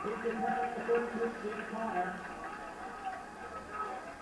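Muffled, faint voices from a television football broadcast, heard through the TV's speaker, clearer for about the first two seconds and then trailing into a low murmur.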